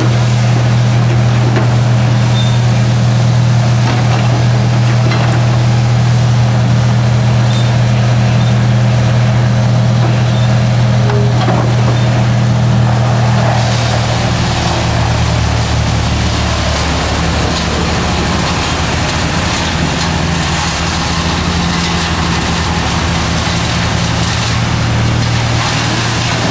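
Heavy-equipment engine running steadily at a constant pitch, its hum dropping to a lower pitch about halfway through.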